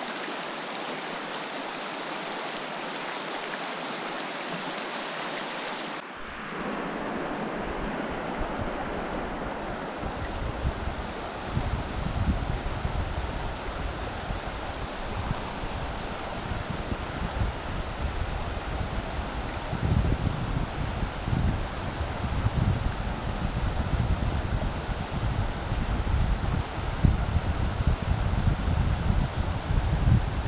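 Shallow rocky creek running over a riffle, a steady rush of water. From about ten seconds in, uneven gusts of wind buffet the microphone.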